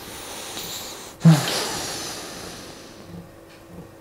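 A man drawing a breath and then letting out a long, audible sigh about a second in that trails off over a second or so.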